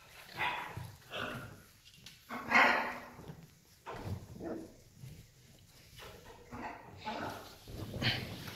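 A series of short, bark-like calls from pet parrots, with the loudest about two and a half seconds in.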